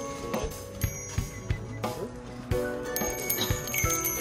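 Small decorative brass bells struck by hand, a series of clinks each ringing on, over background music.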